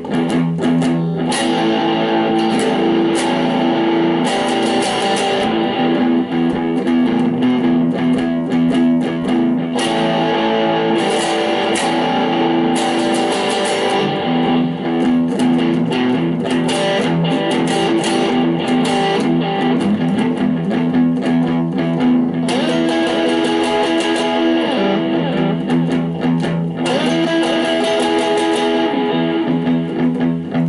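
Electric guitar playing a slow blues, sustained notes ringing over one another, with a few bent notes about three-quarters of the way through.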